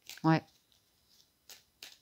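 A deck of oracle cards being shuffled overhand by hand, giving a few short, soft card swishes and clicks, two of them close together near the end.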